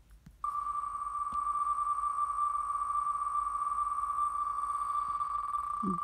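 Online name-wheel spin sound played through a device speaker as the wheel spins fast: its ticks come so quickly that they blend into one steady high tone, starting about half a second in.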